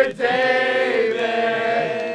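A group of men singing together into a microphone, holding long notes in one sustained phrase.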